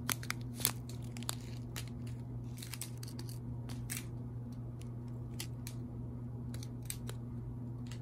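Crinkling and clicking of a strip of sealed plastic bags of square resin diamonds being handled and slid along. The sharp clicks come scattered, the loudest in the first second.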